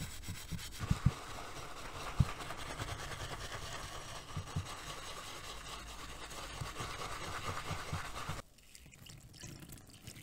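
A bristle brush scrubbing a soapy, finned engine cover in a tub of water, a steady scratchy brushing with a few sharp knocks in the first couple of seconds. The brushing stops suddenly near the end.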